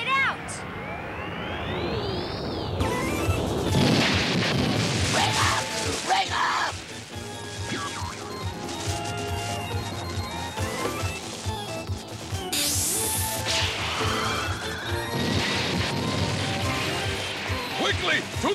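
Cartoon sound effects of an overloaded machine breaking down: a whistle that rises and falls, then a run of crashes and bangs, a quick rising zip near the middle and more crashes near the end, over background music.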